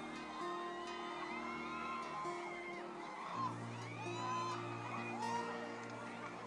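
Soft background music of sustained chords, the notes changing every second or so, with faint voices.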